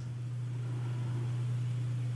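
Steady low hum with a faint hiss, background noise of the recording with no other event.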